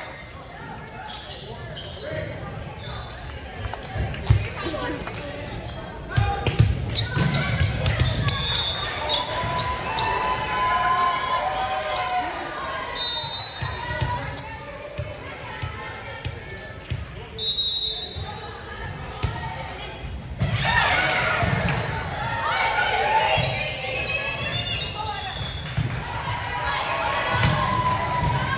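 Volleyball bouncing and being struck on a hardwood gym floor, with sharp impacts scattered through. Players and spectators call and chat throughout, their voices louder about three-quarters of the way in, all in the reverberant sound of a large gymnasium.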